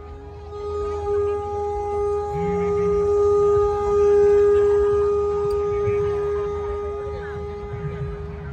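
One long, steady horn-like note held without wavering over the stage sound system, stopping near the end, over a low background rumble.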